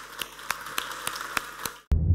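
Audience applauding: a spread of hand claps, some standing out sharply over the rest. It cuts off suddenly near the end, and music with a heavy bass comes in.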